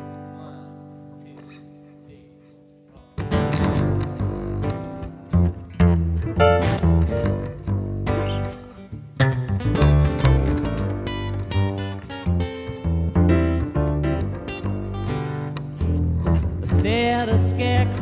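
Live acoustic guitar and upright bass playing a song intro: a single chord rings and fades, then about three seconds in the guitar and plucked bass start a steady groove together.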